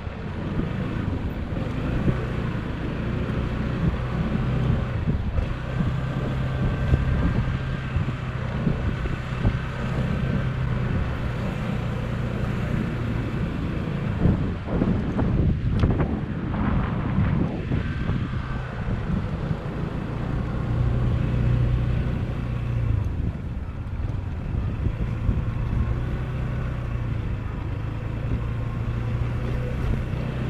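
Shineray Urban 150 motorcycle's small 150 cc engine running at low road speed on cobblestones, with wind on the microphone. The engine note rises and falls a few times around the middle.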